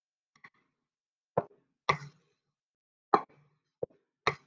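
Wooden rolling pin with side handles rolling out dough on a countertop, knocking and clacking each time it is pushed along or set down. The knocks are sharp and irregular, five in all, one faint and two loud ones in the middle.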